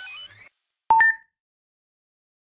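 Garmin VIRB electronic sound logo: a few quick rising digital sweeps and high blips, then just under a second in a sharp click and a bright two-tone chime.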